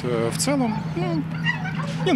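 A man talking, with a dog barking in the background over a steady low hum.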